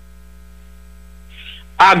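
Steady electrical mains hum with faint steady higher tones under a short pause in a man's speech. A brief soft noise comes about one and a half seconds in, and the voice starts again near the end.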